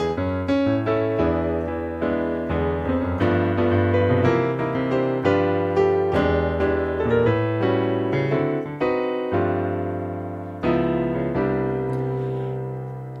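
Acoustic piano sound from a Roland Fantom synthesizer playing a run of jazz chords over a bass line, struck about once or twice a second. About two thirds of the way in, a final chord is struck and left to ring and fade.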